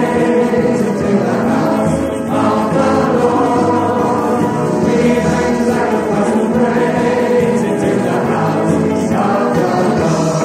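A large mixed choir singing a gospel praise chorus, with a brief dip about two seconds in as a new phrase begins.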